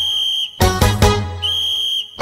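Northern Thai (Lanna) folk-pop music: a high, whistle-like tone held twice over a steady deep bass note, with a quick run of struck notes between the two.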